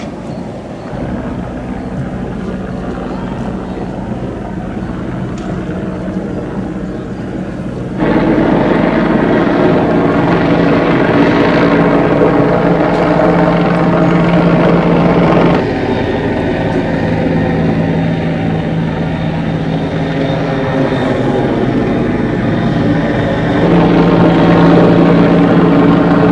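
A loud, steady mechanical drone holding a constant pitch, over a rushing noise. It jumps louder about 8 seconds in, drops back a little around 16 seconds, and rises again near the end.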